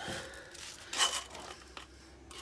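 Rustling and scraping of a work light being handled and repositioned, with a louder scrape about a second in.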